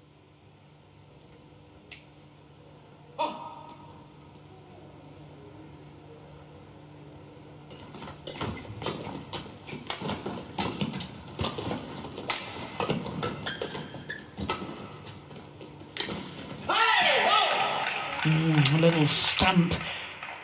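Badminton rally in an indoor arena: rackets hitting the shuttlecock amid quick footwork on the court, with a single sharp hit about three seconds in and a busy run of hits and scuffs from about eight seconds in. Near the end come loud voice shouts as the point is won.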